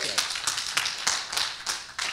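An audience clapping: many separate hand claps, irregular and distinct rather than a dense roar.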